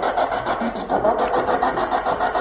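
Ghost-box 'portal' rig: a sweeping radio fed through an effects pedal into a Danelectro Honeytone mini amp, giving a steady choppy hiss with a fast, even pulse and broken fragments of voices.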